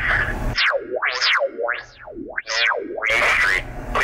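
A synthetic tone sliding up and down three times, covering the street address in a recorded elevator emergency phone announcement, with the phone's recorded voice either side.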